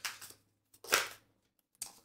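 A tarot card being slid off the deck: a quiet, short, crisp swish about a second in, with faint clicks at the start and near the end.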